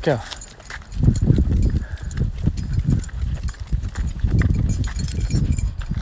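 Footsteps on a concrete sidewalk and the light metallic jingle of a dog's collar and leash hardware during a walk, over a steady low rumble from a phone being carried.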